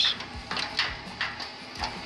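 Irregular metal clicks and clinks as a screw clamp is turned tight against a barrel stove's cast-iron door, about six in two seconds, over the steady hum of the running oil heater.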